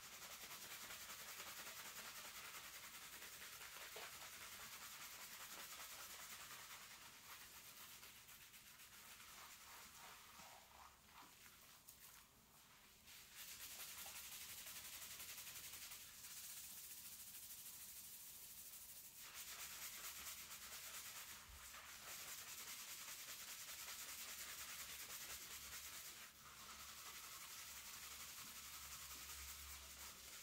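Fingertips scrubbing a scalp through thick shampoo lather: a soft, steady rubbing of wet, foamy hair, with a few short lulls.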